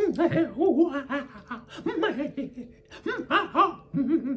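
A man laughing in three bursts with short pauses between them.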